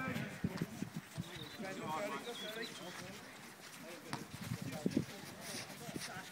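Faint voices of footballers calling out during play, with a few dull thuds of a football being kicked, once early on and again near the end.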